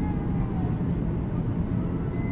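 Steady roar inside the passenger cabin of a Boeing 737-800 in descent: its CFM56 turbofan engines and the airflow over the fuselage, deep and even throughout.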